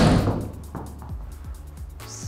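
A golf driver striking a teed ball once at the very start, a sharp crack that fades over about half a second, with background music running underneath.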